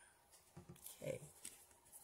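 Near silence: room tone with a soft, low spoken "okay" about halfway through and a few faint clicks.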